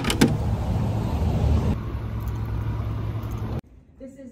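Street traffic: a car going by, a steady rush of engine and tyre noise with a low hum, cutting off suddenly near the end.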